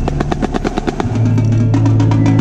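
Marching snare drum struck with sticks in a fast, even run of strokes, about a dozen a second, stopping about a second in. A low held note from the accompanying ensemble sounds under the strokes and carries on after them.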